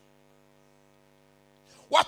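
Faint, steady electrical mains hum, a low buzz of several even tones, filling a pause in a man's amplified speech; his voice comes back right at the end.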